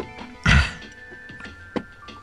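Background music with steady held tones, broken by one loud dull thunk about half a second in and a short sharp click near the end.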